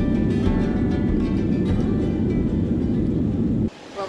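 Acoustic guitar music over the loud low rumble of a Boeing 737's cabin during its landing roll on the runway. Both stop suddenly near the end.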